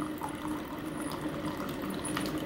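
Keurig single-serve coffee maker brewing: hot coffee running into the mug with a steady low hum under it.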